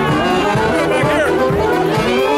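A Mummers string band playing live, saxophones carrying the melody over a steady beat, with crowd chatter underneath.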